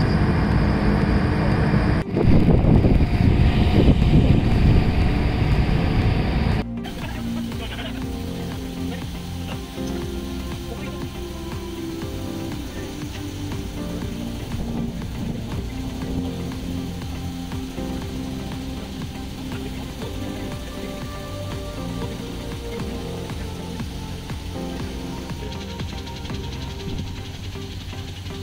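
Loud rushing outdoor noise for the first six or seven seconds, with a brief dropout about two seconds in, then an abrupt change to quieter background music that carries on to the end.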